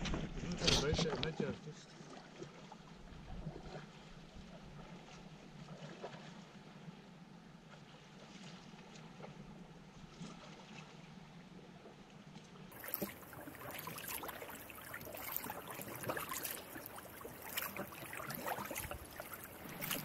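Faint, even outdoor background for most of the first part. From about two-thirds in, close double-bladed sea kayak paddle strokes: the blades dipping into flat calm water with irregular light splashes and drips, heard from on the kayak itself.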